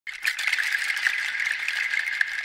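Insects trilling steadily, a high shrill buzz made of rapid clicks, starting abruptly.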